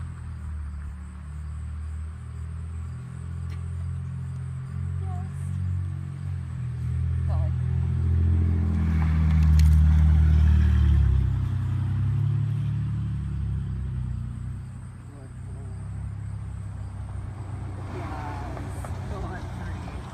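Low motor-vehicle engine rumble from the street, building to its loudest about halfway through and then fading, as a car passes.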